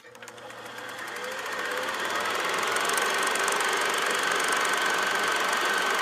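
Film projector running: a click, then its rapid mechanical clatter and motor noise swell over the first two seconds or so and settle into a steady run with a faint whine.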